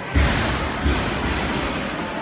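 Two dull, heavy thumps, the first just after the start and the second under a second later, over the steady hubbub of a busy gym.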